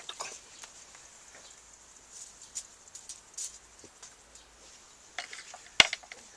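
Scattered small clicks and rustles of hands working around a small wood-burning stove, then one sharp knock near the end.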